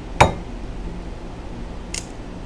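A raw egg cracked with one sharp tap against a hard edge about a quarter second in, followed by quiet room tone with a faint tick near the end.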